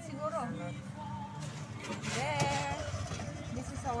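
Indistinct voices and snatches of music over the low, steady hum of an idling vehicle engine.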